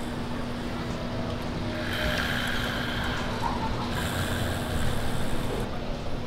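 Steady low rumble of a car engine running, with a constant hum.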